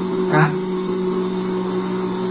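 A steady low hum, like a small electric motor running, with one short spoken syllable about half a second in.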